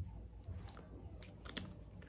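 Faint handling sounds of a plastic cosmetic squeeze tube being set down: a soft bump at the start, then a few light clicks.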